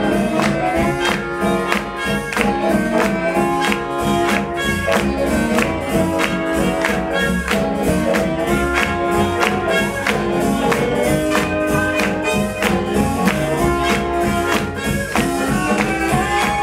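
Swing jazz band playing an up-tempo instrumental passage, with a steady beat and horn lines.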